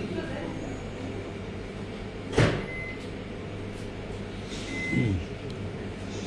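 Steady low hum of a train carriage, with a sharp clunk about two and a half seconds in and a second, falling-pitched noise about five seconds in.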